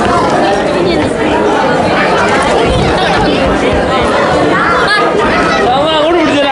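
Crowd chatter: many people talking at once, a steady babble of overlapping voices in a large hall.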